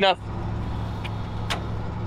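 Ford wrecker's engine idling steadily while its wheel lift holds the vehicle, with a single sharp click about one and a half seconds in.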